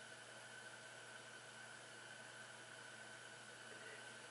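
Near silence: steady faint hiss of room tone.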